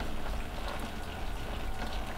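Steady low background rumble and hiss, with no distinct event.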